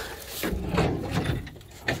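Tilt-forward hood of an old school bus being swung open by hand: a rumbling scrape as it pivots, then a sharp knock near the end as it comes to a stop.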